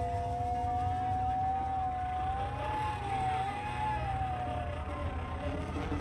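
Live afrobeat band holding a single long note that bends slowly up and down in pitch over a low bass rumble; the note dies away near the end.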